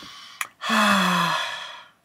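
A man's long, voiced sigh: a breathy exhale with a falling tone, lasting over a second and fading out, just after a short click.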